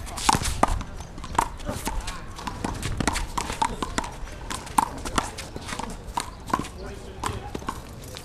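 Rubber handball being slapped by hand and smacking off a concrete wall in a one-wall handball rally, with sneakers scuffing and pattering on the concrete court. Many sharp knocks come at uneven intervals.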